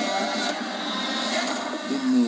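Film trailer soundtrack playing back: a steady, even bed of score and sound effects with a faint voice in it. It sounds thin, with the bass cut away.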